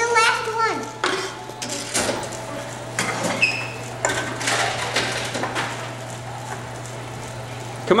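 Tomra T-83 HCp reverse vending machine taking in drink containers: a steady motor hum under repeated clatters and knocks as cans and bottles are fed into the intake.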